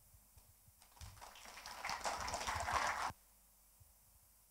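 Faint audience applause, growing over about two seconds and cutting off abruptly a little after three seconds in.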